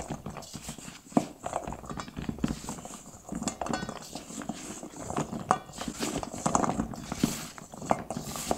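Chocolate-coated snowball cookies tumbling in powdered sugar in a stainless steel bowl, tossed by a gloved hand: irregular soft knocks and taps of the cookies against each other and the bowl.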